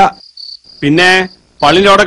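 A cricket chirping in short, evenly repeated high pulses, heard in the gaps between a man's loud voice about a second in and again near the end.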